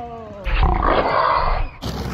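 A man groaning, his voice sliding down in pitch, then letting out a loud, raspy yell for about a second after falling off his skateboard; it stops abruptly.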